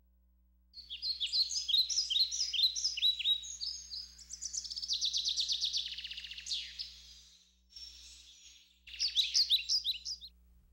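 Songbirds singing: quick high chirping phrases and a rapid trill, starting about a second in, easing off near eight seconds, then another burst of chirps near the end.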